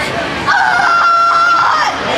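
A young girl's karate kiai: one long, high-pitched shout, starting about half a second in and held for nearly a second and a half before cutting off.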